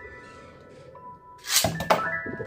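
A Beyblade launcher pulled near the end: a short, loud whirring rasp, then a sharp click as the top is released onto the plastic stadium. Background music plays throughout.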